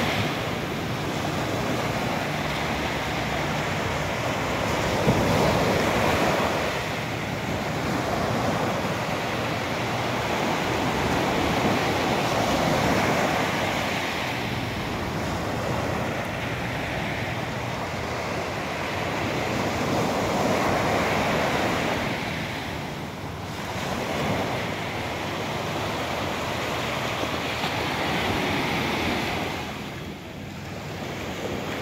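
Sea waves and wind on the microphone: a steady rush that swells and eases every seven or eight seconds.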